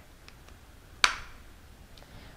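A single sharp click about a second in as the scanning tip of a Carestream CS3800 intraoral scanner wand snaps into place on the plastic wand, the audible sign that the tip is fully attached.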